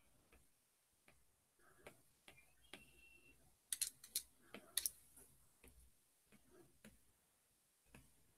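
Quiet, scattered ticks and taps of a stylus on a drawing tablet's screen, with a few sharper clicks close together near the middle.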